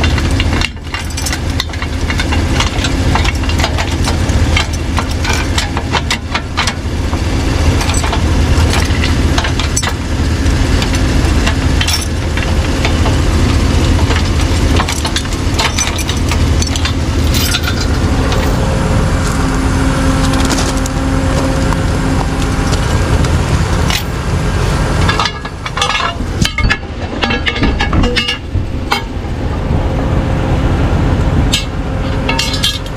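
An engine idling steadily, with repeated metallic clinks, knocks and rattles of a tow chain being handled and hooked behind a truck's front wheel.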